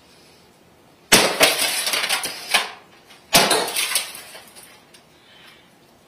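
A bat smashing into a flat-screen TV: two heavy blows about two seconds apart, each a sharp crash followed by about a second of crackling as the screen breaks.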